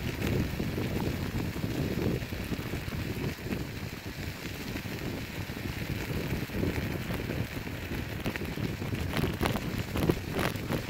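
Kickbike Cross Max kick scooter's tyres rolling over wet gravel roadbase: a steady crackling hiss, with low wind rumble on the microphone.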